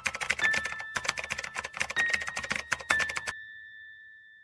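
Rapid, irregular clicking like a keyboard typing sound effect, which stops about three seconds in. A faint thin high tone rings on under it and fades away.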